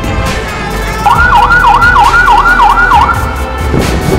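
Emergency-vehicle siren in a fast warble, its pitch sweeping up and down about three times a second for about two seconds, starting about a second in, over background music.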